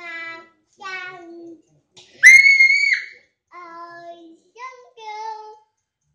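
A young child singing a string of short notes, with a loud, very high-pitched squeal held for under a second about two seconds in.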